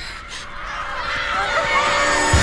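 Horror-trailer score and sound design building up: a swelling drone of held tones with shrill, sliding squeals over it, growing steadily louder toward the end.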